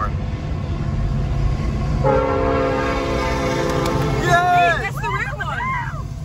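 Freight locomotive air horn sounding one long blast of several notes at once, starting about two seconds in and lasting nearly three seconds, over a steady low rumble of the passing train.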